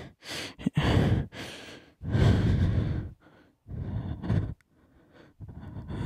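A young man breathing heavily and sighing, about five deep breaths in and out, the longest about two seconds in: nervous breaths to steady himself.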